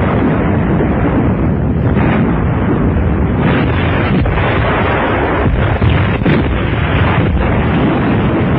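Artillery fire and shell explosions in a continuous rumble, with sharp gun reports standing out several times. It is heard on a muffled, narrow-band old film soundtrack.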